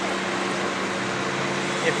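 Diesel engine idling, a steady low hum.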